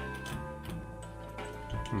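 Electronic music playing through the music visualizer app: held synth tones over a light ticking beat of about three clicks a second.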